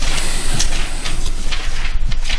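Thin Bible pages being turned and handled, a papery rustle with a couple of brief flicks, over a steady low hum.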